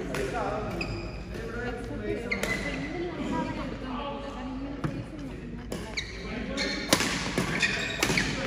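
Badminton rackets striking a shuttlecock in a doubles rally, sharp cracks that ring in a large hall, the loudest near the end, with short shoe squeaks on the court floor.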